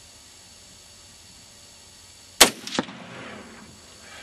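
A single shot from an AR-15 rifle in .223 Remington about two and a half seconds in: a sharp crack, then a fainter second crack just after, fading away.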